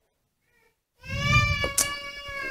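A long, drawn-out animal call at a steady high pitch, starting suddenly about a second in after complete silence; two short clicks fall in the middle of it.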